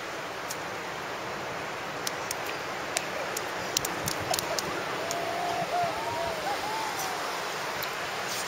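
Ocean surf washing on the beach as a steady rush, with a few small clicks in the middle and a faint wavering voice about halfway through.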